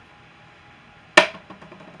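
Low steady background hiss, then a single sharp knock or click about a second in, with a short ringing tail and a few faint ticks after it.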